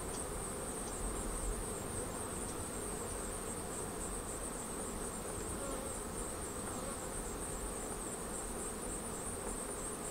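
Steady, even hum of a honey bee colony at work inside the hive, with a faint, constant high-pitched tone above it.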